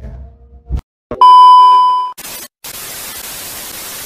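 Television test-card sound effect: after a couple of soft clicks, a loud, steady, high test-tone beep sounds for about a second, then cuts to an even hiss of TV static for about two seconds.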